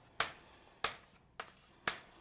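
Sharp, evenly spaced taps of a hard object, about two a second, four in all, each dying away quickly.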